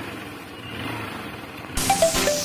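A motorcycle engine running at idle, a low steady hum. Electronic music cuts in suddenly near the end.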